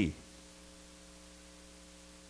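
Steady electrical mains hum, a low even buzz that holds at one level through the pause in the preaching.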